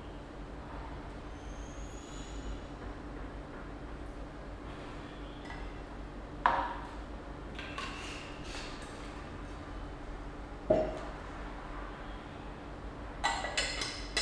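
Glassware and bottles handled on a tabletop: a sharp knock about halfway through, a duller thud a few seconds later, then several quick glass clinks near the end as the glass lid is set onto a glass teapot. A low steady hum lies underneath.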